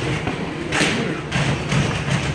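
Boxing gloves landing punches during close-range sparring: several dull thuds, the loudest a little under a second in.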